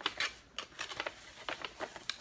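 Paper rustling as a greeting card and its envelope are handled and searched through: a string of short, irregular crinkles and flicks.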